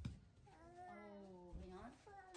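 A soft thump, then one drawn-out vocal sound lasting about a second and a half, fairly steady in pitch.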